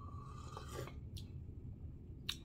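A quiet sip of hot coffee from a mug: a faint slurp with a thin, whistle-like note that stops just before a second in, followed by a small click.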